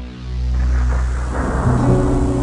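Background music: a held low drone with a rush of noise, like a thunder or rain effect, swelling up about half a second in.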